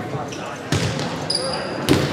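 A volleyball being struck hard twice: a sharp hit about two-thirds of a second in as the serve is made, then another just before the end as the ball is played on the far side, over crowd voices in a gym.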